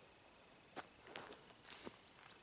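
Near silence broken by a few faint rustling footsteps in tall grass, about a second in and again near the end.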